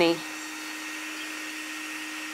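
Bee vacuum running steadily: a constant motor hum with one steady tone over an airy hiss.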